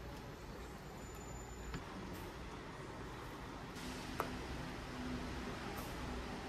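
Faint stirring of a thick chocolate milk mixture in a stainless steel pot with a silicone spatula: soft scraping with a couple of light clicks, over a low steady hiss.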